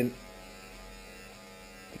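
Wahl electric hair clippers running with a steady buzz, blades freshly coated with clipper cleaning spray.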